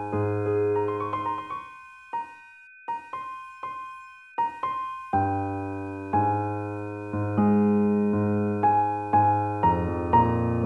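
Slow keyboard music in a piano-like tone: held chords thin out to a few single high notes about two seconds in, and fuller chords with a low bass return about five seconds in.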